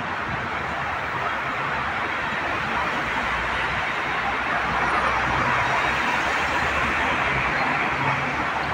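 Steady city street traffic noise, swelling slightly a few seconds in with a low engine hum from passing vehicles.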